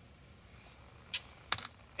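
Quiet background with a few short, sharp clicks: one a little past halfway and a quick cluster shortly before the end.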